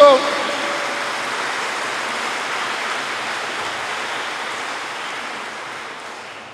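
Audience applauding steadily, then slowly fading away near the end.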